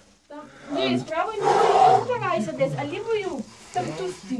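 A man's voice groaning and straining with effort as he squeezes his body through a tight cave crevice. It starts about a second in, is loudest and roughest near the middle, and tails off before the end.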